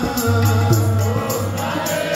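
Sikh kirtan: a harmonium and tabla accompany group singing of a Gurbani hymn. The drums keep a steady rhythm under the held harmonium chords.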